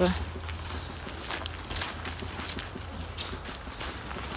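Irregular footsteps on a damp dirt path scattered with fallen leaves, over a low steady rumble.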